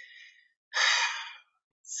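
A person's breath in, followed about a second in by a louder, breathy sigh out lasting under a second.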